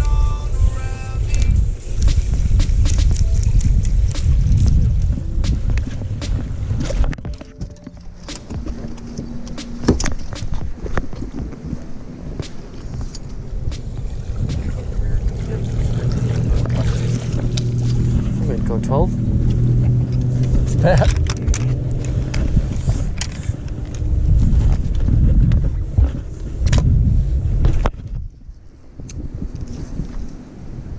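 Wind rumbling against the microphone on an open fishing boat, heaviest at the start. A steady low hum runs through the middle, and there are a few sharp clicks and knocks of gear being handled.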